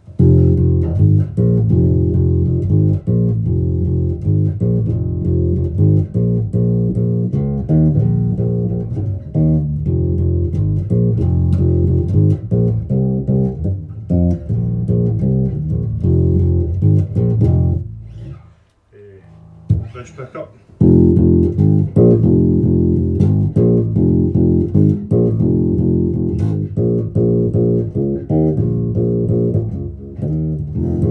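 Electric bass, a 1970s-style Jazz Bass copy, played through a Laney RB4 bass amp and extension cab: a steady run of plucked bass notes. The playing breaks off briefly a little past halfway, then picks up again.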